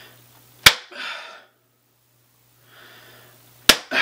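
Two sharp hand claps about three seconds apart, each followed by a short rushing hiss.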